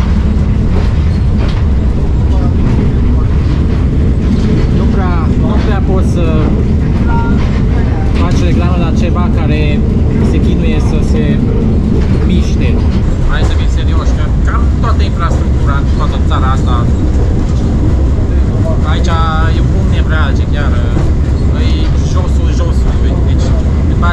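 Interior of a Malaxa diesel railcar under way: a loud, steady low rumble of engine and running gear, with occasional knocks from the track and people talking over it.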